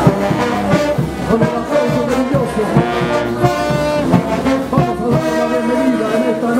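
Live brass band playing caporales music: trumpets and trombones sounding chords together over a steady percussive beat.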